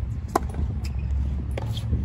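A tennis ball struck hard with a racket close by: one sharp pop about a third of a second in, then fainter pops of the rally on the far side of the court, over a steady low rumble.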